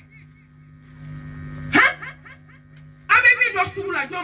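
A woman preaching into a handheld microphone, over a steady low hum. About two seconds in there is a brief loud vocal outburst, and animated speech resumes from about three seconds on.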